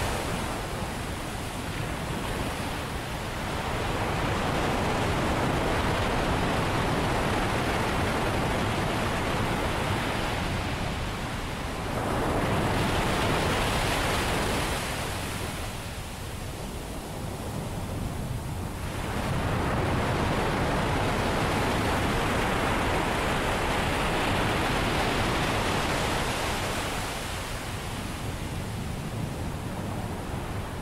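Ocean surf: waves breaking and washing in, the roar swelling and easing in long surges several seconds apart.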